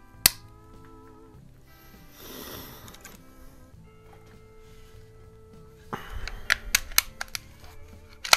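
Wire tie snipped with a pair of snips: one sharp click about a quarter second in. Near the end a run of sharp clicks and clacks as the Crosman 66 pump air rifle is handled, over steady background music.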